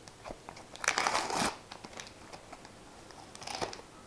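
Football sticker packet's wrapper crinkling as it is opened and the stickers are pulled out: a loud burst of crackling about a second in and a shorter one near the end.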